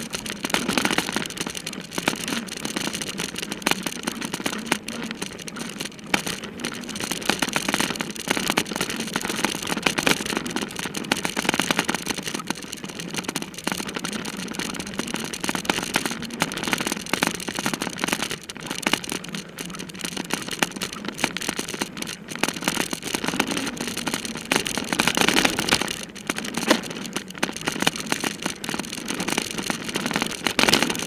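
Mountain bike ridden fast over a dirt singletrack, heard from a camera on the bike or rider: a steady rush of wind on the microphone, with constant clattering and rattling from the bike over the rough ground.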